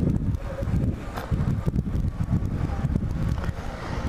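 Bajaj Platina 100 motorcycle's small single-cylinder four-stroke engine running as it rides downhill, with wind rushing over the microphone.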